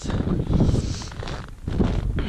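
Strong wind buffeting the microphone, a gusty rumble that drops away briefly about one and a half seconds in.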